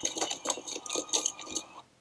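A quick irregular run of light clinks and rattles, about ten in under two seconds, from the laptop's speakers. It cuts off suddenly near the end as the video stops to buffer.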